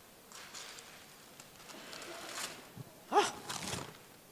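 Paper wrapping being torn and pulled off a package, in two stretches of rustling, followed about three seconds in by an exclaimed "Oh".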